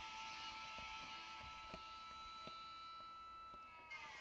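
Faint, irregular soft ticks of Panini Prizm trading cards being slid one at a time off a stack held in the hand, over a faint steady electrical whine.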